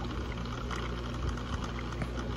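Aquarium equipment running: a steady low hum with a faint bubbling, trickling water sound.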